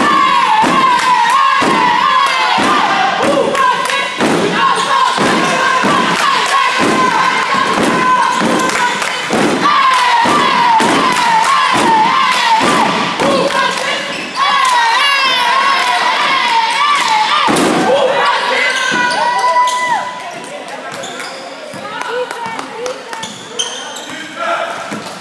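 Loud gym noise from a basketball game: thumps about twice a second under continuous high, wavering squeals, all easing off about twenty seconds in.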